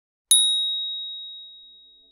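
A single bright bell-like ding, a sound effect, struck once about a third of a second in. One high tone rings on and fades away over about two seconds.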